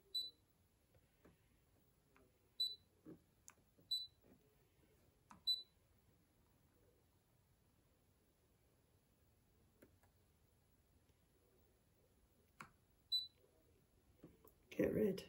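Brother ScanNCut SDX135 cutting machine's touchscreen giving short high beeps as its buttons are tapped with a stylus. There are five beeps, four in the first six seconds and one near the end, with a few faint taps between them.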